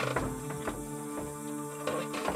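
Wooden cart wheel creaking and clicking as the cart is pushed, a few sharp knocks among them, over sustained background music.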